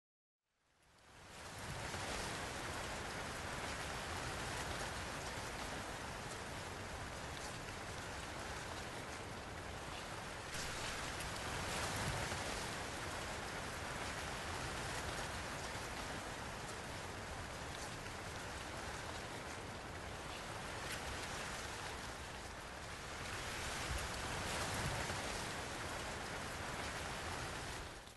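A steady, even rushing noise like rain, starting about a second in, with slight swells in loudness.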